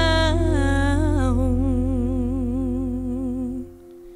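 A live band's final held note: a woman sings a long closing note with a slow, wide vibrato over a sustained chord and bass. Everything cuts off together about three and a half seconds in, ending the song.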